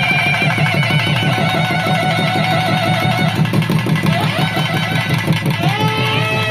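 Periya melam ensemble playing: a nadaswaram's wavering double-reed melody over rapid, dense thavil drumming.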